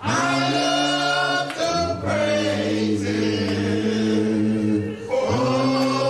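Choir singing in long held notes, with a new phrase starting about five seconds in.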